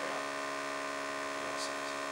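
Steady electrical mains hum, an even buzz made of many stacked tones that holds at one level throughout.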